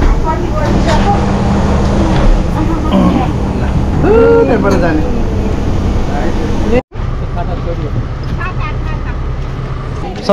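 Steady low engine rumble heard from inside a shuttle bus cabin, with a voice briefly over it about four seconds in. The rumble cuts off suddenly just before seven seconds and gives way to a quieter outdoor background.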